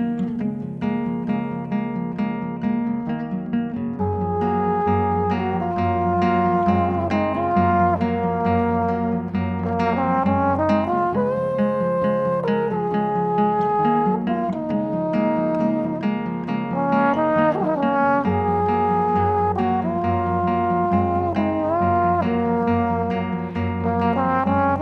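Trombone playing a slow, smooth melody over fingerpicked nylon-string classical guitar, with one quick upward slide between notes about two-thirds of the way through.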